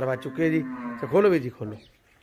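Crossbred dairy cattle mooing: one long, level call, then a shorter call that rises and falls.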